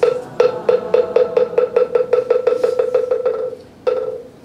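Moktak (Korean Buddhist wooden fish) struck with its mallet: one knock, then a run of knocks that quicken and fade away, and a last single knock near the end. This is the moktak roll that cues a congregation's bow.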